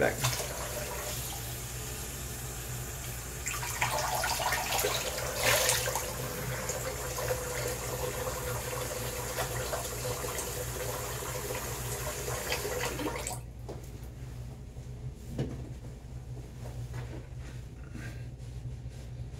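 Bathroom sink tap running while the face is rinsed after a shave, with louder splashing about four to six seconds in. The tap is shut off abruptly about thirteen seconds in.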